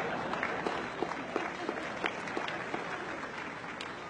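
Large audience applauding, the clapping slowly dying away into scattered individual claps.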